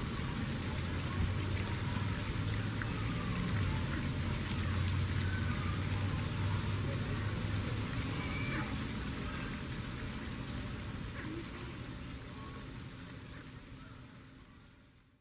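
Steady rushing, water-like outdoor noise with a low hum under it and a few faint, short bird chirps, fading out toward the end.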